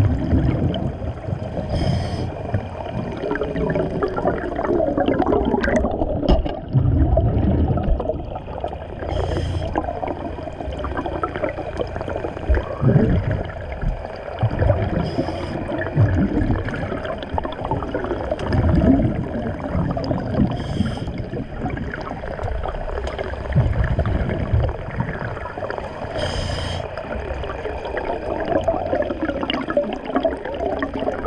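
A diver's breathing regulator underwater: a short hiss of inhalation about every six seconds, each followed by a gurgling, rumbling rush of exhaled bubbles.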